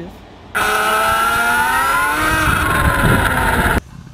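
Sur Ron electric dirt bike's motor and ASI controller whining, the pitch climbing as the bike speeds up and then easing back down, over a low rumble. It cuts in about half a second in and stops abruptly just before the end.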